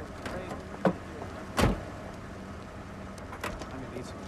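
Two knocks about three-quarters of a second apart, the second and louder a heavy thud like a car door being shut, over a steady low hum and faint background voices.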